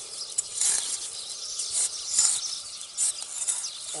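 Steel spade scraping and chopping into dry, hard-packed soil, loosening dirt in repeated short strokes about two a second.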